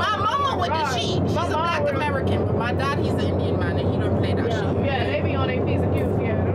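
Women's voices talking over the steady, low drone of a private jet's cabin in flight.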